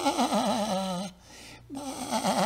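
A man imitating a lamb's bleat: two long, quavering "baa" calls, the second starting near the end.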